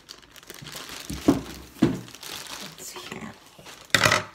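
Thin plastic bag crinkling and rustling as it is pulled off a canvas bag. Two short louder bumps come a little over a second in, about half a second apart.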